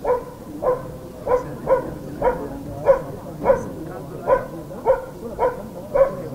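A dog barking repeatedly, about two short barks a second.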